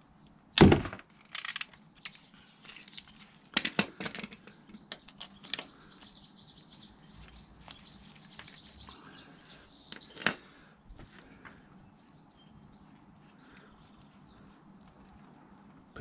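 A few scattered clicks and knocks of a metal hand tool being seated on and turned against the oil-screen screw plug of a KTM 690 engine, the loudest a dull thud near the start. Birds chirp faintly in the background.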